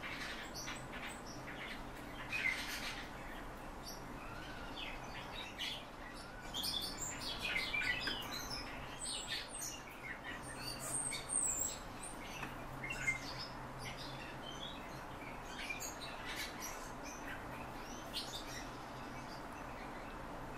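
Short, high chirps and calls from a pet Eurasian golden oriole and fieldfare, scattered and busiest through the middle, over a faint steady low hum.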